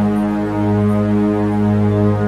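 Sustained electronic meditation drone pitched on 207.36 Hz (G sharp), with a lower octave beneath it and many overtones, holding steady without a break.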